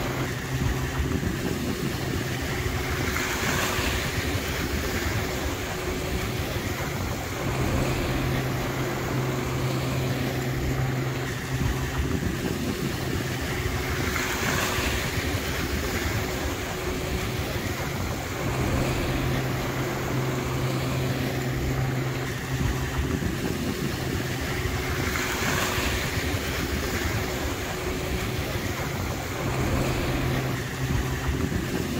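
Steady low motor hum over a wash of wind and water noise, with a swell of hiss about every eleven seconds.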